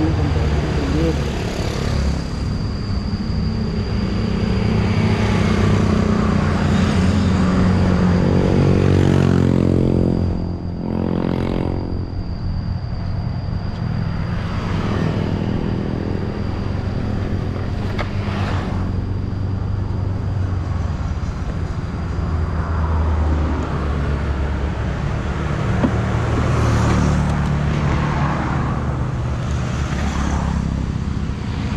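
Road traffic: cars and motorcycles passing on a road, engines running with several pass-bys, the loudest about ten seconds in. A thin steady high tone runs through the first two-thirds.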